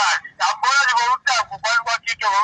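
A caller's voice coming through a small mobile phone's loudspeaker, thin and high-pitched with no bass, talking in quick syllables.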